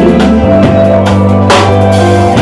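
Live gospel band playing, led by a drum kit under held low bass notes, with a strong drum stroke about one and a half seconds in.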